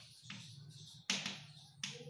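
Chalk writing a word on a chalkboard: a few sharp taps of the chalk against the board, the loudest about a second in, each followed by a brief scratchy stroke.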